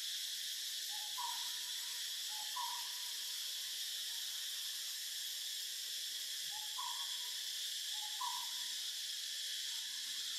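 A bird gives short hooting calls, each a lower note stepping up to a higher one, twice in the first three seconds and twice more after about seven seconds. Behind them runs a steady insect drone of tropical forest.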